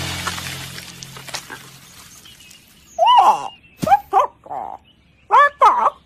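The fading tail of a loud crash, dying away over the first two seconds. From about three seconds in, a series of short, high cartoon animal-character calls follows, each sliding up and down in pitch.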